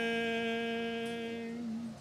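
Unaccompanied singing: one long, low held note that slowly fades and stops just before the end.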